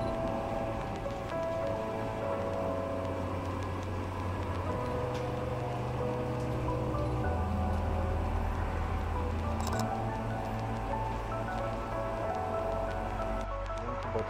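Background music: soft sustained chords over a bass note that changes every two to three seconds.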